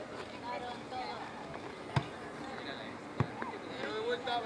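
Scattered voices of players and onlookers calling across an open football pitch, with two sharp knocks about two seconds and three seconds in, the first the louder.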